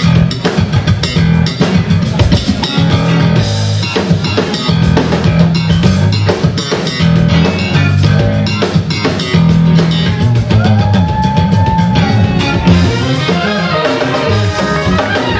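Live funk-jazz band playing: a busy Fender electric bass line over a drum kit groove, with electric guitar. About two-thirds of the way through a held note slides up and down above the groove.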